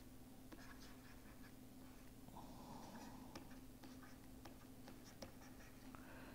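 Near silence with faint scattered ticks and scratches of a stylus writing on a pen tablet, over a steady low hum.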